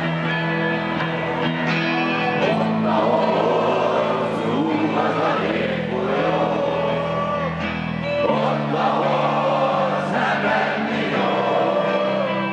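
Live rock band playing: electric guitars, bass, drums and keyboards, with voices singing the melody in chorus from about two and a half seconds in.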